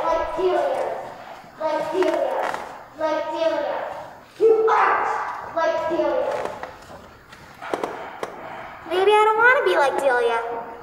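A child's voice in phrases about a second long with short pauses between, with rising and falling pitch near the end.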